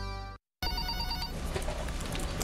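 Music stops suddenly about a third of a second in. After a brief silence, an office telephone rings in a steady pulsing pattern, with short clicks over the room sound.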